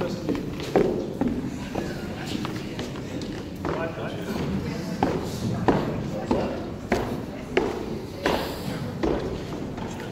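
Indistinct murmur of voices in a large hall, with scattered sharp knocks and thuds every second or so.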